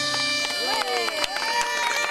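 Galician gaita bagpipe drone holding steady as the drums drop out, with voices calling out over it in rising and falling shouts.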